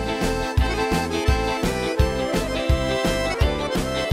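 Instrumental passage of an upbeat Silesian schlager played by a band: a steady drum beat of about three strokes a second under accordion, keyboard and violin.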